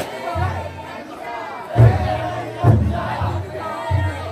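Big taiko drum on a taikodai float beaten in deep, heavy strokes about a second apart, under a crowd of bearers shouting a chant.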